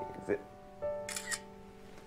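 Smartphone camera shutter sound: a quick double click a little over a second in, as a photo is taken. Soft background music with held notes plays underneath.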